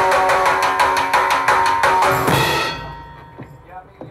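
Live rock band with electric guitar and drum kit playing the end of a song, the drums striking fast and even, about eight times a second, over held guitar notes. The band stops on a final hit about two and a half seconds in, and the last notes ring out and fade.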